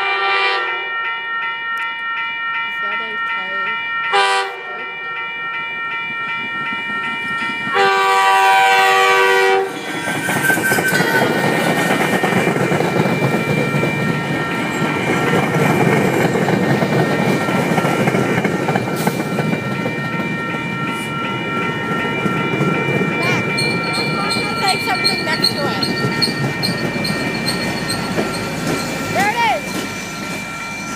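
Grade-crossing bell ringing steadily while an MBTA commuter rail train sounds its horn: a brief blast, a short toot about four seconds in, then a long blast about eight seconds in. From about ten seconds the train passes close by, its wheels rumbling and clacking over the rails, and the diesel locomotive at the rear goes by near the end.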